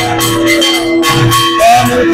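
Devotional aarti music: small brass hand cymbals (kartals) clashing in a steady rhythm over long held tones.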